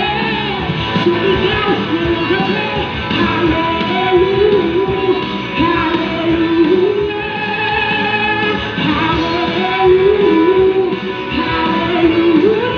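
Live band playing a rock song over the loudspeakers, electric guitar to the fore with a sung melody over it.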